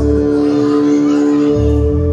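Live band playing an instrumental passage: guitars holding a steady chord over bass and drums, with the low end dropping out for about a second partway through and then coming back.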